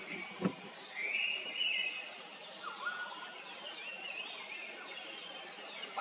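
Forest ambience: a steady high insect drone with birds calling over it, a rising then held whistle about a second in and several short gliding notes a few seconds later. A soft low thump near the start.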